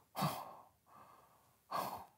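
A man breathing heavily while he eats cereal: two loud, breathy exhales, one just after the start and one near the end, with a softer breath between them.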